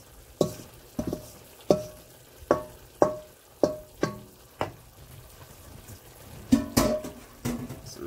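Wooden spoon knocking and scraping against a metal pot while stirring chopped vegetables into browning chicken. Each stroke gives a sharp knock with a short ring from the pot, about eight in quick succession, a pause, then a few more near the end, over light sizzling.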